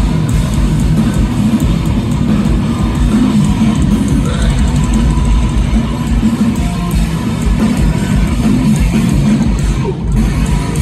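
Hardcore punk band playing live at full volume: distorted electric guitars and bass over pounding drums, continuous throughout.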